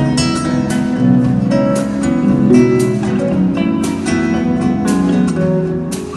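Live instrumental music: a steel-string acoustic guitar strumming chords, with an electric guitar, bass guitar and drums.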